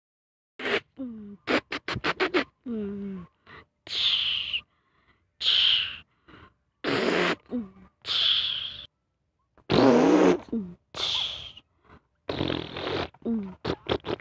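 A child making truck noises with the mouth: short spurts of voiced engine sounds with dropping pitch, hissing bursts and a run of quick clicks, broken by short gaps.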